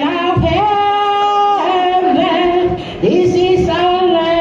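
A woman singing solo into a microphone in long held notes that step in pitch, with a short break about three seconds in before the next phrase.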